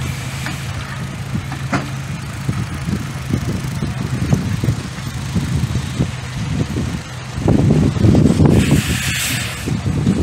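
Railway cars rolling past on the track: a steady low rumble and hum with occasional sharp clicks from the wheels. About seven and a half seconds in, a louder rush of noise lasts about two seconds.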